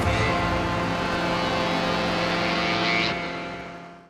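Hovercraft engine and propeller running with a steady hum, fading out in the last second.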